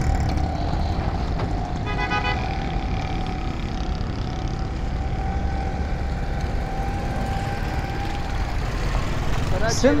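Roadside traffic: a steady low engine rumble, with a short vehicle horn toot about two seconds in.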